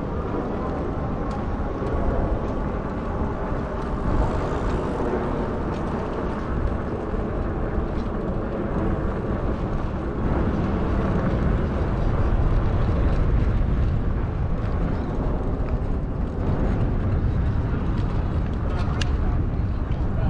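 Wind rushing over the microphone and tyre noise from a Lectric XP electric bike rolling along a concrete path, with a faint steady tone in the first several seconds and a couple of clicks near the end.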